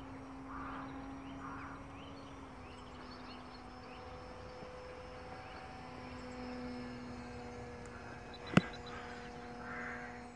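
Motor and propeller of a radio-controlled Tiger Moth model plane flying overhead: a steady distant hum whose pitch wavers slightly as the throttle and attitude change. A single sharp click sounds near the end.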